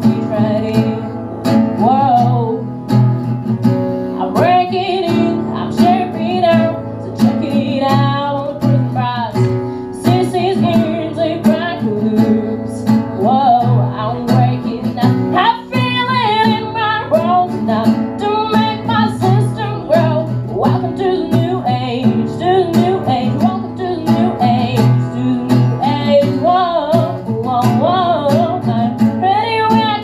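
A live acoustic cover of a rock song: an acoustic guitar strummed in a steady rhythm under a woman's lead vocal sung into a microphone.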